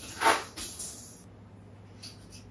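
Stainless steel shelf rack of a combi oven rattling and scraping as it is handled: one short, noisy metallic burst about a quarter second in that trails off within a second, leaving a low steady hum.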